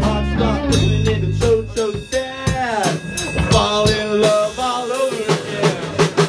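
A live rock band of drums, electric guitar and bass guitar playing loudly. About two seconds in the bass drops out, leaving drums and guitar with sliding notes, until the full band comes back in at the end.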